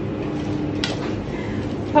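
Steady hum of commercial kitchen ventilation, with a faint steady tone that fades a little past one second. A single light click of metal tongs against a plate comes a little under a second in.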